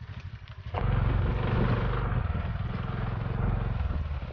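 Motorcycle engine heard from on the bike, running under load on a rough trail; about a second in the throttle opens and the engine's pulsing exhaust beat gets much louder and holds.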